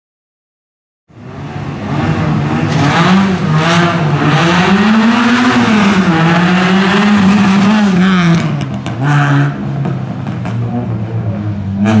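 Group N Renault Clio race car's engine revving hard, loud and close, its pitch rising and falling again and again as it accelerates and lifts between slalom cones. The sound cuts in suddenly about a second in, after silence.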